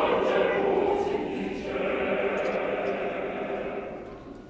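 Choir singing a sustained phrase that fades away near the end.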